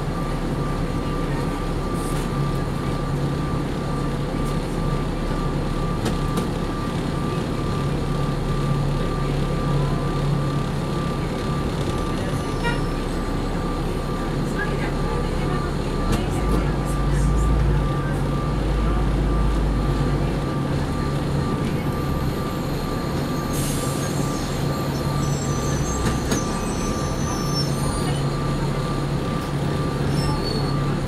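Interior of a Neoplan AN459 articulated transit bus: the engine runs with a steady low hum and a constant thin high tone. A deeper rumble swells for a few seconds just past the middle as the bus pulls away.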